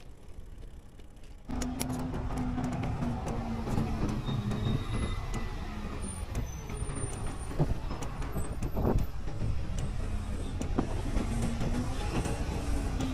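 Diesel engines of stopped city buses idling close by: a low, steady rumble with a hum that starts abruptly about a second and a half in, with a few light clicks and rattles over it.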